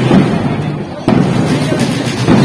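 Loud, dense street-parade noise: marching-band drums and crowd mixed together, rumbling and distorted, with a sudden jump in level about halfway through.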